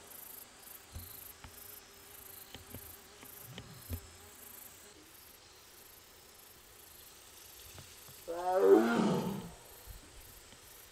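An Amur tiger gives one loud call about eight seconds in, lasting a little over a second and falling in pitch. It is calling after being separated from its companion tiger. Before the call there are only faint ticks and knocks.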